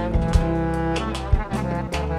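Instrumental Azerbaijani band music: a clarinet and a balaban play the melody in held reedy notes over a plucked lute, bass and regular drum hits.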